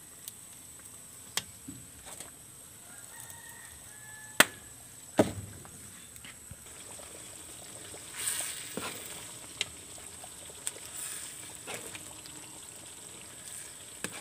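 Scattered sharp clicks and knocks from cooking over a wood fire, the loudest two about four and five seconds in, with a brief hiss about eight seconds in.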